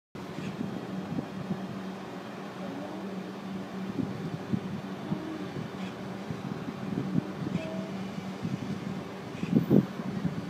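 Steady low hum inside a parked car's cabin, from the idling car and its air-conditioning fan, with a louder short knock near the end.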